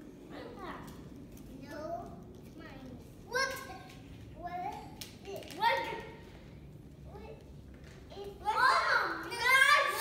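Young children's voices chattering and exclaiming in short bursts, loudest near the end, with a few light taps mixed in.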